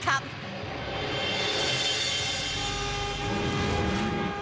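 Cartoon soundtrack swell: a whooshing noise that builds over about three seconds, with held tones underneath and a low rumble near the end.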